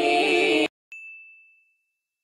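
Background music with singing cuts off suddenly, then a single bright ding rings out on one clear high note and fades away over about a second.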